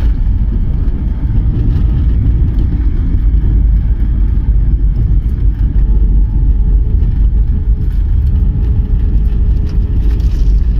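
Jet airliner's landing roll heard from inside the cabin: a loud, steady low rumble as the wheels run along the runway with the spoilers raised and the aircraft slowing. A faint steady tone rises out of the rumble about halfway through.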